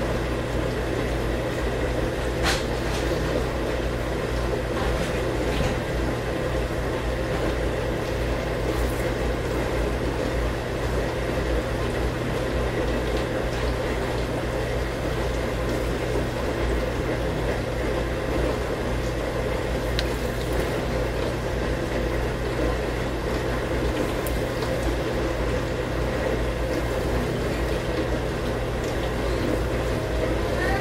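Steady mechanical hum with a constant whooshing noise, and a few light clicks.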